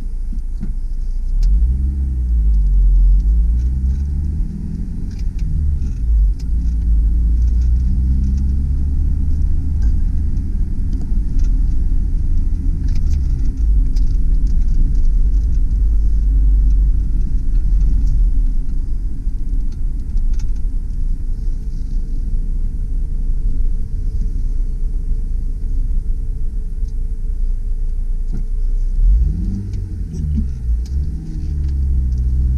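1997 Honda Civic del Sol's four-cylinder engine under way, heard from inside the cabin over a heavy low road rumble. Its pitch rises and falls several times in the first ten seconds as the car accelerates and is shifted through its five-speed manual gearbox, then runs steadier, and rises again near the end.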